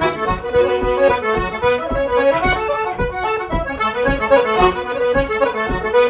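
A six-voice single-row button accordion in D playing a fast traditional dance tune: a quick run of reedy notes over a steady low pulse.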